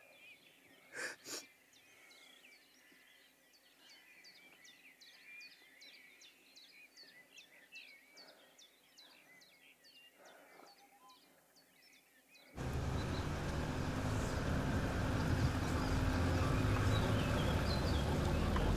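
Two short sobbing breaths from a woman about a second in, then a small bird chirping repeatedly, about two or three calls a second, over quiet woodland. About two-thirds of the way through this cuts abruptly to the loud, steady engine, road and wind noise of a convertible driving with its top down.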